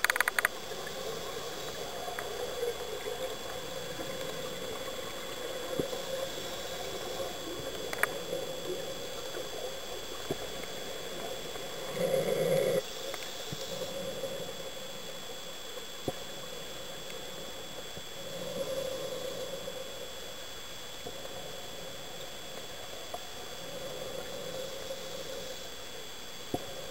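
Underwater sound of a scuba diver breathing: a swell of exhaled bubbles from the regulator about every five or six seconds, the loudest one near the middle, over a faint steady whine.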